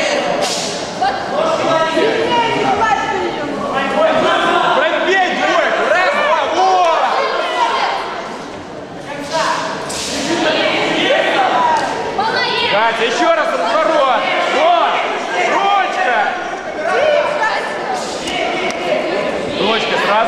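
Voices shouting and talking, echoing in a large sports hall, with a few sharp thuds of gloved punches landing.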